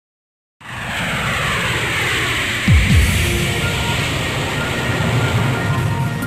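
Jet airliner flying overhead, its engine roar starting suddenly about half a second in, with its pitch sliding downward as it passes. Two deep falling booms sound about three seconds in.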